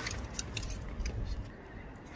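A few faint, light metallic clicks and clinks, the sharpest about half a second in, over a low rumble.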